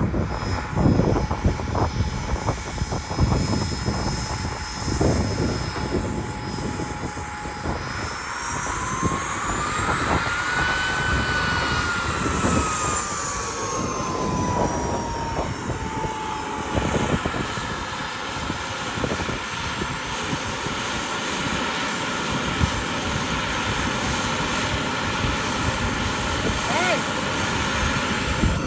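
K-102G4 model jet turbine in a Top RC Cougar RC jet whining steadily, then rising in pitch and falling back over about eight seconds, with wind noise on the microphone.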